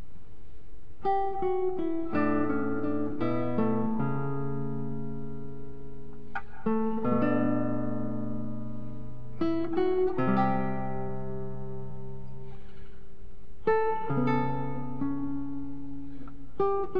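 Solo classical nylon-string guitar: a plucked melody over held bass notes and chords, played in phrases with brief pauses between them. The first notes come about a second in.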